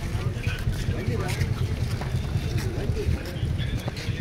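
Wind rumbling on the microphone of a handheld phone carried along by a walking crowd, with several people's voices talking in the background and a few scuffs of sandalled footsteps on concrete.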